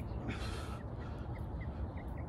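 A single harsh animal call lasting about half a second, a quarter of a second in, over a steady low rumble. Faint short chirps recur in the background.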